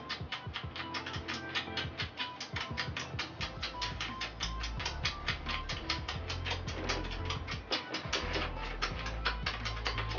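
Rapid, repeated kissing: a fast, even run of lip smacks, several a second, as a couple pecks at each other as quickly as they can.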